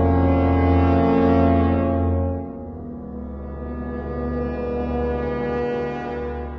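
Eerie background music: a deep, horn-like drone chord held steady, dropping quieter about two and a half seconds in and giving way to another long held chord.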